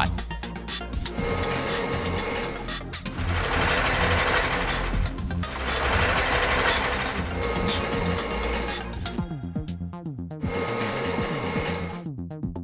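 Animated crane truck's boom and winch sound effect: mechanical whirring and ratcheting that swells twice as the crane lifts its load, over background music with a steady beat.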